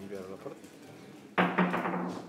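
A man's voice calls out loudly about one and a half seconds in, a short held vowel-like exclamation that fades away, over faint background voices.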